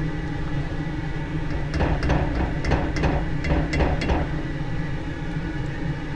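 Spoon knocking against a can of tomato paste and a pot as the paste is spooned into a red-wine braise and stirred: a run of irregular light taps over a steady low hum.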